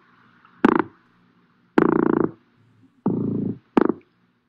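Recorded weakfish drumming: four croaking calls made of rapid pulses, a short one about half a second in, two longer ones of about half a second each near 2 and 3 seconds, and a short one near the end, over a faint recording hiss. The fish makes these calls by vibrating its swim bladder.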